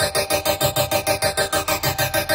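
Electronic music: a noisy synthesizer chord pulsing rapidly and evenly, about eight times a second, with a slow sweep moving through the highs.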